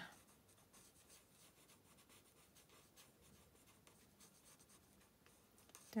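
Faint scratching of a Stampin' Blends alcohol marker's fine tip on paper, colouring in many short, quick strokes.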